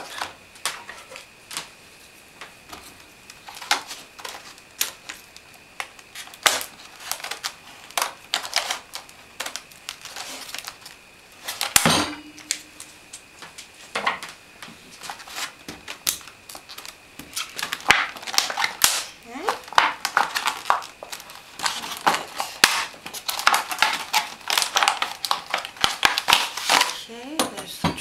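Rigid clear plastic blister pack being pried open and handled: irregular crackling clicks and snaps, with one sharp louder snap about twelve seconds in and dense crackling through most of the last ten seconds.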